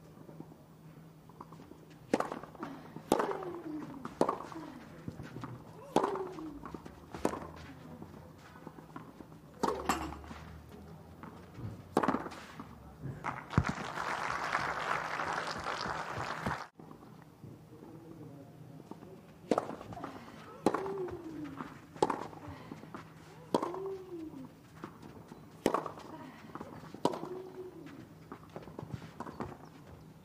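Tennis rally on a clay court: racket strikes on the ball about once a second, many followed by a player's short grunt that falls in pitch. Applause breaks out about 13 seconds in for a few seconds, then another rally of strikes and grunts follows.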